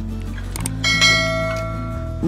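Subscribe-button overlay sound effect: two quick clicks, then a bright bell ding that rings on and slowly fades. Soft background music with steady low notes plays underneath.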